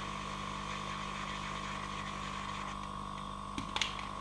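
Hot-air gun of a Yihua 968DB+ rework station running, a steady whir of its fan and airflow with a constant high whine, as it heats shrink tubing. A couple of light clicks near the end.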